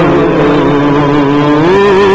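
A man's voice singing a devotional Urdu naat, holding one long sustained note that steps up in pitch near the end.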